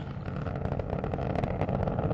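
Space Shuttle Atlantis's solid rocket boosters and three main engines firing in ascent: a steady, deep rumble with dense crackle through it.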